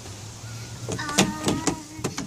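A plastic tube slide squeaking as a child slides down it: a steady squeal lasting about a second, starting about a second in, with a few knocks of her body against the tube.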